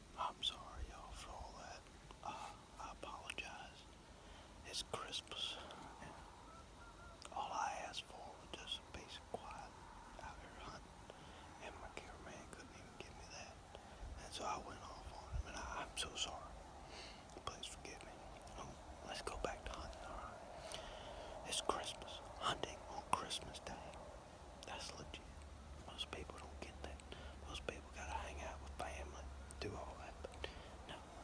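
A man whispering close to the microphone, with soft mouth clicks between words.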